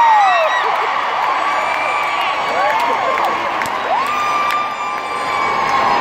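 Large concert crowd cheering, with many high-pitched screams and whoops; one long held scream stands out from about four seconds in.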